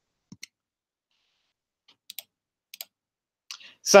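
Three quick pairs of faint clicks from a computer in near silence, as the presenter works her computer to advance the slideshow; a voice begins near the end.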